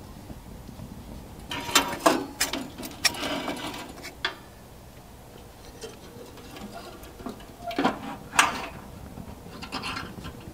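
Wood stove burning a compressed-sawdust log, with irregular crackles and sharp pops: a cluster of snaps about two to four seconds in, and another about eight seconds in.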